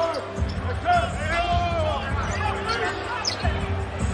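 A basketball being dribbled on the hardwood court during live NBA play, over steady arena noise.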